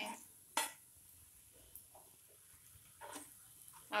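Faint stirring of vermicelli upma in a frying pan with a spatula, with one sharp knock of the spatula against the pan about half a second in and a brief soft sound near the end.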